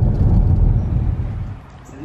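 Low, steady road rumble inside a car's cabin as it rolls over a bumpy unpaved road. It cuts off suddenly about one and a half seconds in.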